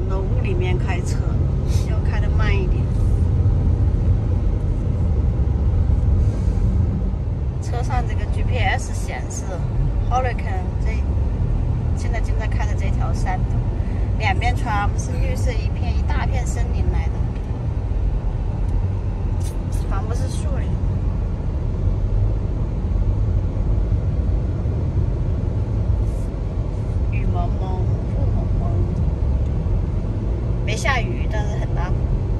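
Steady low rumble of a car's tyre and engine noise heard from inside the cabin while it is driven along a winding mountain road.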